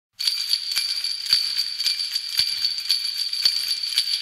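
Sleigh bells shaken in a steady beat of about four strokes a second, over a continuous bright jingle.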